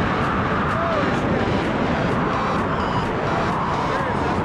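Steady rush of air over a camera microphone under an open parachute canopy, with a faint steady tone in it.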